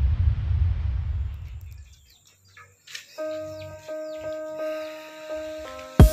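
The low rumble of an intro logo effect dies away over the first two seconds. After a moment of near silence, intro music starts about three seconds in: a held synth chord with faint chirps over it.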